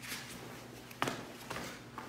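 Feet shuffling and stepping on a padded floor mat as two martial artists move against each other, with a sharp knock about a second in and two fainter ones after it.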